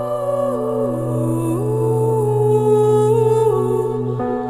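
Music: a melody that slides smoothly between notes over a steady low drone.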